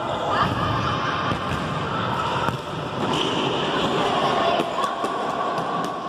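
Several futsal balls being kicked and bouncing on a wooden court in a large sports hall, many short knocks overlapping, with children's voices chattering throughout.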